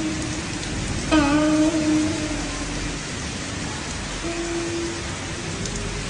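Instrumental intro of a karaoke backing track, before the vocal comes in: a held melodic note about a second in and another about four seconds in, over a steady hiss.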